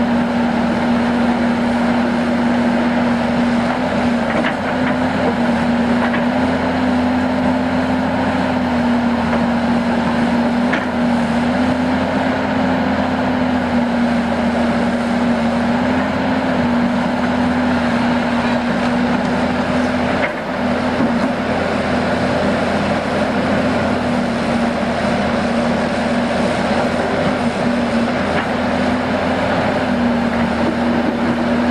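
Sumitomo SH300 30-ton tracked excavator's diesel engine running steadily under work while the machine grades soil, its pitch dipping slightly now and then. There is a brief drop in level about twenty seconds in.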